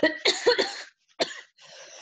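A person coughing: a quick cluster of coughs in the first second, one more sharp cough a little later, then a quieter breathy rasp.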